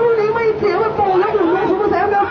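Speech only: a raised, high-pitched voice talking without a break.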